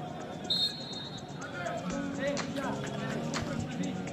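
Football match sound: a football being kicked several times, with players' shouting voices and a brief high whistle tone shortly after the start.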